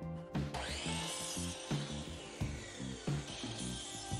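Compound miter saw with a toothed circular blade starting up about half a second in, its motor whine rising fast, then slowly sagging in pitch as the blade cuts through a wooden board. Background music with a steady beat plays under it.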